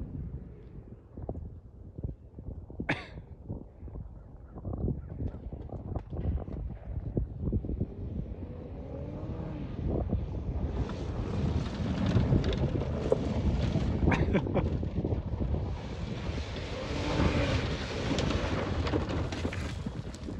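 Hyundai SUV driven hard off-road, its engine revving up and down with the tyres and body rumbling over rough ground. It gets louder in the second half as it comes closer.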